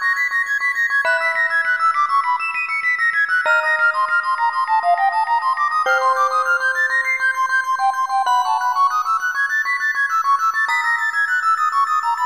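Prelude for sopranino recorder and celesta in a fast tempo. Rapid note runs sweep up and down over held lower notes, which change every two to three seconds.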